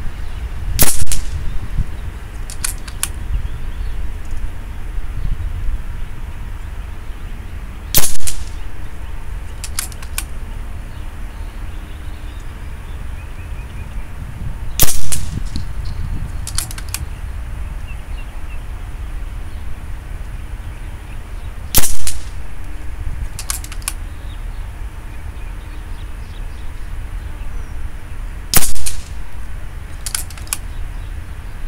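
Five shots from a .22 FX Dreamline PCP air rifle with a 700 mm slug liner, shooting 17.5-grain slugs: a sharp crack roughly every seven seconds. About two seconds after each shot come two lighter clicks of the action being cycled to chamber the next slug.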